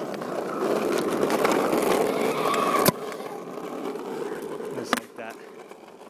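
Bicycle pump pressurising a water-bottle air rocket on a PVC launcher, then a sharp pop about three seconds in as the rocket breaks free of its duct-tape seal and launches. A fainter click follows about two seconds later.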